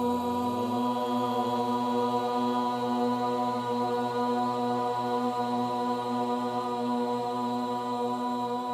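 Outro music: a chanted mantra held on one long steady pitch, with a lower tone an octave beneath it.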